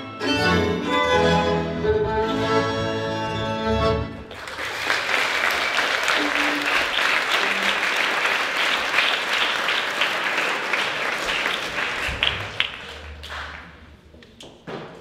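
Folk band's fiddle and accordion playing the last bars of a Hungarian folk tune, ending about four seconds in. The audience then claps, and the applause fades out near the end.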